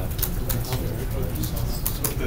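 Indistinct background voices over a steady low rumble, with a few sharp clicks or knocks.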